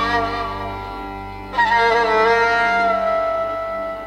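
Music: a violin playing a slow, wavering melody over a steady low accompaniment, a new phrase entering about a second and a half in and settling on a long held note.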